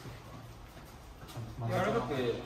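A man's voice speaking briefly, starting about one and a half seconds in, after a second of quiet gym room tone.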